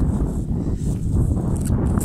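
Wind buffeting the camera microphone: a steady, uneven low rumble.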